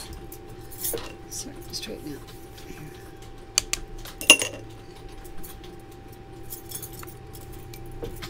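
Light clicks and clinks of small metal items, a pearl-sizing card and an oyster knife, handled on a tabletop, with one sharper clink about four seconds in. A faint steady hum runs underneath.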